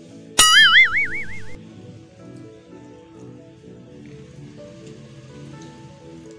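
Background music with a cartoon 'boing' sound effect about half a second in: a sudden, loud, wobbling tone that fades out over about a second.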